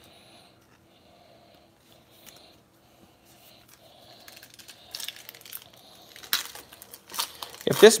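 A foil trading-card pack being torn open and crinkled by hand. It is faint at first, then grows louder about halfway through, with a few sharp rips of the wrapper.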